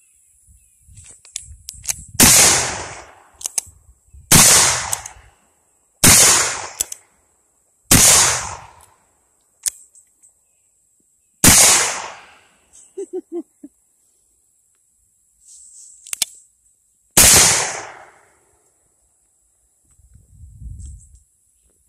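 A cap-and-ball black-powder revolver fired six times, a single loud report each time, at uneven intervals of two to six seconds, with small clicks between the shots.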